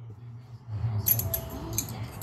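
Old steel bearing races clinking together as they are handled: a few light metallic clicks from about a second in, one leaving a faint brief ring, over a steady low hum.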